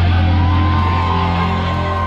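Live band playing at concert volume, heard from among the audience: a held low bass drone with a long ringing high guitar note entering about a third of a second in, typical of a song's closing chord being sustained.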